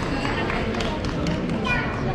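Indistinct voices of passers-by talking in the street, over a steady low street hubbub.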